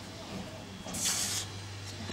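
A broadsword blade swishing once through the air, a brief airy whoosh about a second in, over a steady low hum.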